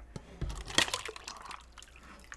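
Stainless steel water bottle being handled and opened: small clicks and knocks from the cap and bottle, with a short splash of water sloshing inside it a little under a second in.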